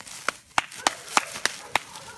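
Footsteps crunching through dry leaf litter and twigs: about six sharp snaps, evenly spaced at roughly three a second, over a light rustle.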